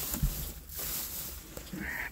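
Rustling of dry hay and wood-shavings bedding in a goat stall, with a soft thump a fraction of a second in.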